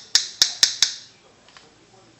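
Makeup brush tapped against a pressed eyeshadow compact: a quick run of four sharp clicks in the first second, about four a second, knocking excess powder off the bristles.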